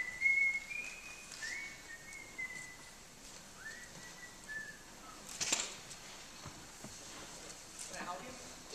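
A person whistling a few long held notes that step between pitches and end lower, stopping after about four and a half seconds. A sharp knock follows about five and a half seconds in.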